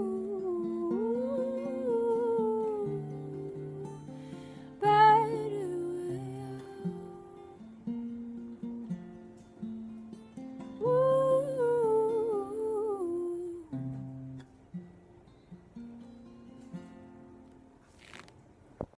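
A woman humming a wordless melody in three phrases over softly picked acoustic guitar, the guitar dying away toward the end as the song closes.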